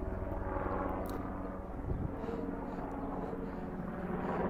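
1933 Harley-Davidson RL's 45-cubic-inch flathead V-twin idling steadily, with a soft thump about two seconds in.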